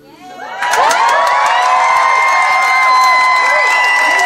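A live gig audience breaks into loud cheering and whooping about half a second in, as the last guitar chord of the song dies away, and the cheering holds steady to the end.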